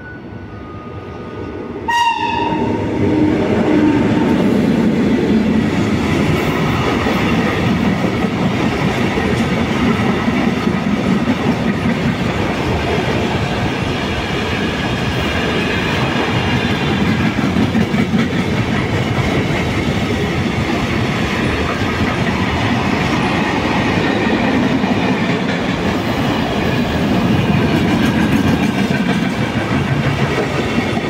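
A Mercitalia Rail E652 electric locomotive passes, hauling a container freight train. It reaches the microphone about two seconds in with a sudden jump in loudness and a tone that drops in pitch. The container wagons then roll by steadily with the clickety-clack of wheels over rail joints.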